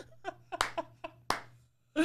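Laptop keyboard being typed on: two sharp key clicks a little under a second apart, with fainter taps around them.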